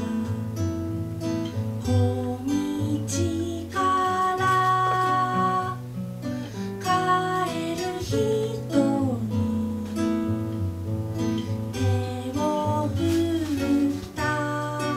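A woman singing into a microphone while accompanying herself on a nylon-string classical guitar, strumming and picking chords. She holds several long notes, one held for about two seconds in the middle.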